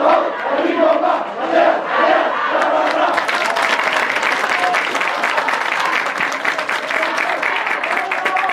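Youth football team shouting a rhythmic chant in unison, a couple of syllables a second, then about three seconds in breaking into a continuous mass of shouting and cheering as the players run out.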